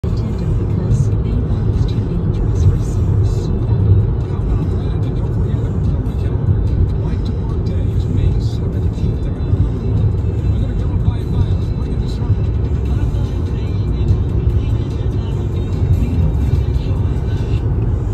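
Steady road and tyre rumble of a car at highway speed, heard from inside the cabin.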